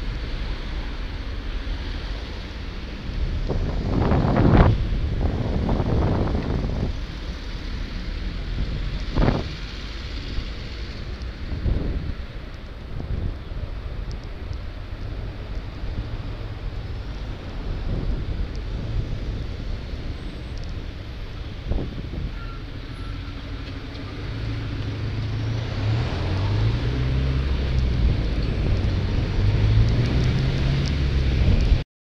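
Wind buffeting an action camera's microphone while riding in road traffic, with passing vehicles and a few louder swells in the first half. In the last part a low engine drone from the vehicle ahead grows louder.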